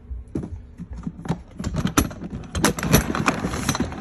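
Hard plastic Ridgid tool box being handled: a quick run of clicks, knocks and rattles, busiest in the second half.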